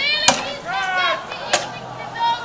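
Two sharp clacks of combat weapons striking each other, about a second and a quarter apart, with loud shouted voices between the hits.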